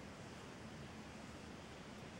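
Faint steady hiss of room tone, with no distinct sound event.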